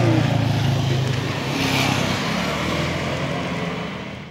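Road traffic going by: a steady low engine hum with tyre and road noise, and a louder hiss about a second and a half in as a vehicle passes.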